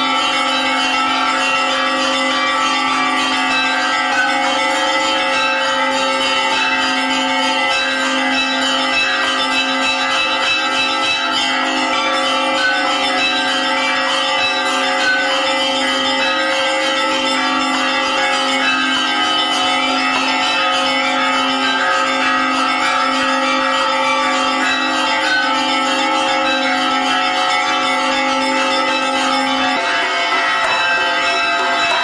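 Church bells ringing continuously, several bells sounding together in a steady peal with no break.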